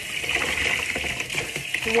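Tap water running steadily into a bucket as a wool nappy cover is rinsed under it.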